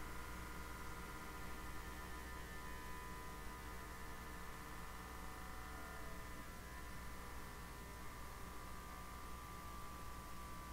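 Built-in pump of a Fieldpiece SDMN6 manometer running faintly with a steady whine of several high tones over a low hum, as the vacuum on the pressure switch is stepped down. The tones shift slightly in pitch as the reading falls.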